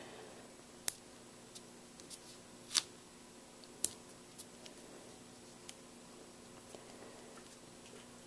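Scattered small clicks and taps of chipboard letter stickers being peeled from their backing sheet and pressed down onto cardstock, a few sharp ones a second or so apart.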